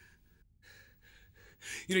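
A person breathing between shouted lines: a few faint breaths, then a sharp, gasping intake of breath near the end, right before speech starts.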